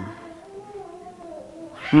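A voice humming softly with a wavering pitch, trailing between two spoken words.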